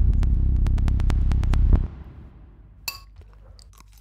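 Electronic music with heavy bass and rapid ticking beats, cutting off about two seconds in. It is followed by a quiet room with one sharp crunch near the end, from someone biting into food.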